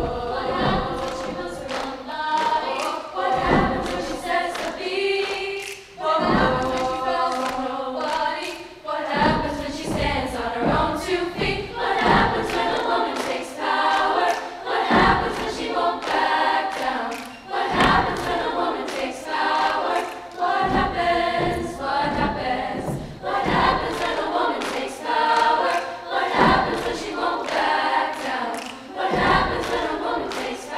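High school women's choir singing in several parts, with a low thump recurring every few seconds beneath the voices.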